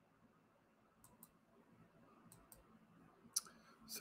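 Faint computer mouse clicks over near-silent room tone: a few double clicks about a second apart, with one sharper click near the end.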